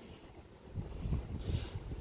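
Wind buffeting the microphone: a low, gusty rumble that picks up a little under a second in.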